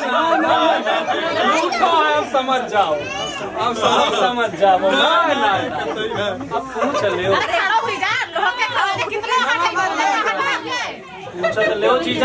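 A group of people talking over one another in lively chatter, several voices at once, easing briefly near the end.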